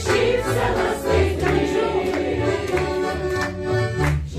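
Mixed choir of men and women singing a Lithuanian romance together, accompanied by a piano accordion.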